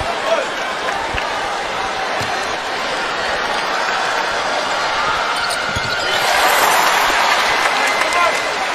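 A basketball is bounced a few times on a hardwood court over steady arena crowd noise. About six seconds in, the crowd's cheering swells as a free throw goes in.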